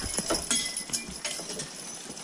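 Hooves of a pair of Percheron draft horses clip-clopping at a walk on a dirt trail, as a few irregular knocks.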